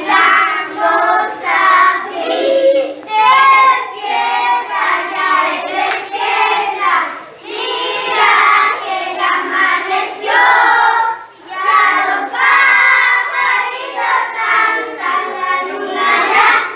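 A group of children singing a birthday song together in phrases.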